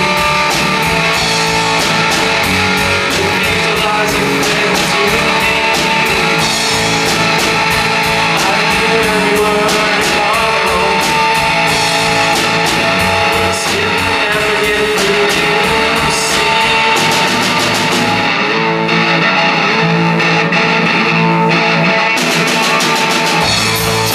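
Live rock band playing, electric guitar over a drum kit; about three-quarters of the way through the drums drop out for a few seconds, then come back in.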